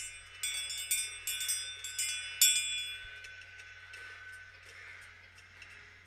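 A small bell rung about five times in quick succession, bright and high, its ringing then fading away over a few seconds. It is the signal to come out of hypnosis and return to full wakefulness.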